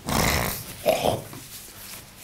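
A man blowing his nose into a tissue close to the microphone: a loud first blast, then a shorter second one about a second in.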